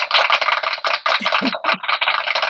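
Several people clapping and calling out at once over a video-call line: a dense, thin, crackly clatter with voices mixed in faintly.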